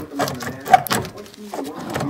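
A wrench working a seized, rusted body mount bolt: irregular metallic clicks and knocks, with one loud sharp crack a little under a second in.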